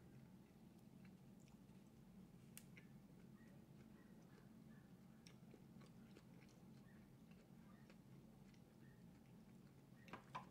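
Faint chewing of a soft chicken taco in a flour tortilla, with scattered small mouth clicks, over a low steady hum.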